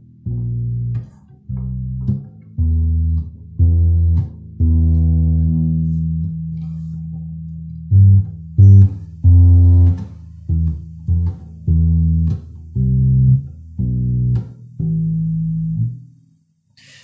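Electric upright bass played fingerstyle with standard pizzicato: a line of about twenty single plucked low notes, some cut short and some left ringing, one held for about three seconds a few seconds in. The loudest plucks come just past the middle.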